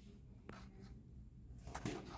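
Faint handling of a picture book's paper pages, with a small click about half a second in and a short low sound near the end.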